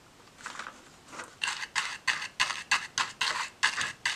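A toothbrush scrubbing around a plastic palette well to load it with burnt sienna watercolour paint for spattering. It makes a run of short, scratchy strokes, about four a second, which begins faintly and becomes steady about a second and a half in.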